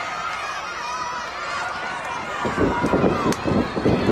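An arena crowd chattering and shouting. From about two and a half seconds in comes a quick run of heavy thuds, wrestlers' boots pounding the ring canvas.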